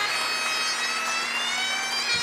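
Great Highland bagpipes: the drones sound steadily under one long held chanter note that slides upward in pitch during the second half.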